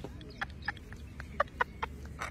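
A woman giggling in short, quick bursts, about six in two seconds.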